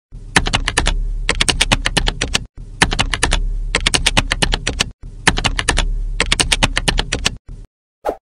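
Rapid computer-keyboard typing, in three runs of about two seconds each with short abrupt breaks between them, over a steady low hum.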